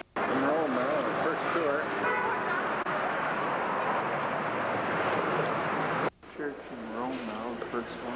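Busy street ambience: people's voices over a steady wash of traffic noise. It cuts off abruptly about six seconds in, followed by a quieter stretch with a voice.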